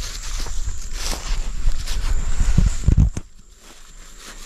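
Footsteps and rustling through grass with bumps of handling, the loudest thumps about three seconds in, then quieter. A steady high insect drone runs underneath.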